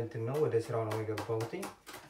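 A man talking for about the first second and a half, over quick knife chops on a cutting board, about four or five a second, which carry on after the talking stops.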